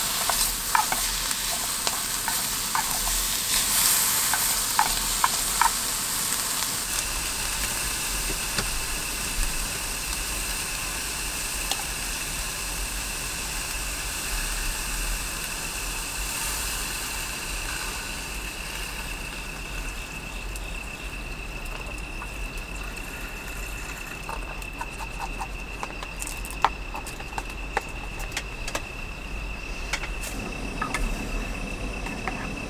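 Ham and vegetables sizzling in an aluminium mess tin on a gas canister burner, with chopsticks clicking against the tin; the sizzle dies down in the second half after milk goes into the tin. A steady high tone joins about seven seconds in.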